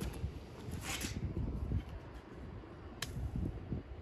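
Low rumble of wind and handling on a phone microphone, with a short hiss about a second in and a single sharp click about three seconds in.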